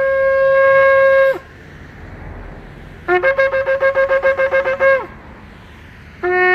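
A shofar blown in two calls. First a long, steady, held blast that falls off about a second and a half in. Then, about three seconds in, a blast that starts on a low note and jumps up before breaking into a quick run of about ten short staccato notes, lasting roughly two seconds.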